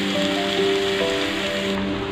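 Water poured into a hot pan of masala-coated chicken, a steady hiss of pouring and sizzling liquid. Background music with long held notes plays throughout.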